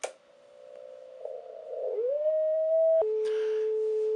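A switch clicks, then a steady whistling beat note from a receiver picking up the signal of a Heathkit VF-1 vacuum-tube VFO just switched on. The tone grows louder and glides up in pitch around two seconds in, then drops abruptly to a lower steady pitch about three seconds in.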